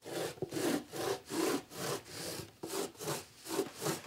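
Rhythmic back-and-forth rasping strokes, about two to three a second, steady throughout.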